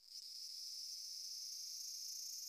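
Large brown cicadas singing: a steady, high-pitched buzzing drone that starts suddenly and then holds level.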